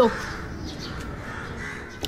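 Crows cawing in the background, quieter than the speech around it.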